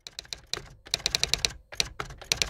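Computer keyboard typing sound effect: fast, uneven runs of key clicks, about ten a second at the quickest, over a low rumble.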